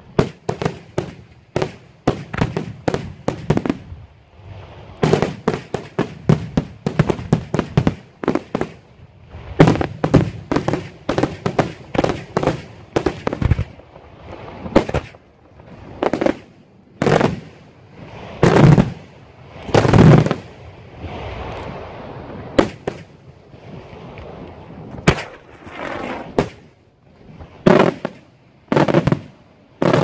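Daytime fireworks display: aerial shells bursting overhead in rapid runs of sharp bangs, with several heavier booms about two thirds of the way through, followed by a few seconds of steadier rumble before the bangs pick up again.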